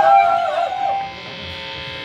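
Amplified sound from a live band's stage rig: pitched sliding tones in the first second fade out, leaving a steady amplifier hum.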